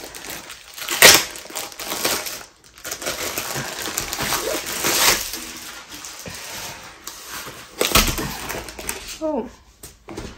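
Clear plastic sleeve crinkling and rustling as a rolled diamond-painting canvas is pulled out and handled, with sharp crackles about a second in and again near eight seconds.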